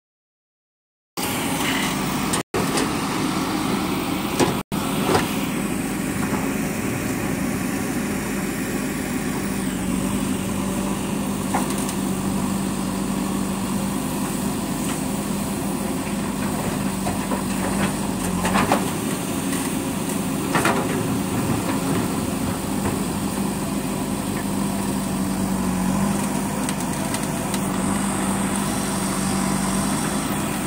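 JCB backhoe loader's diesel engine running steadily under digging load, with a steady drone, as the backhoe scoops earth and dumps it into a pickup bed; occasional short knocks of soil and stones falling. The sound starts about a second in and cuts out briefly twice soon after.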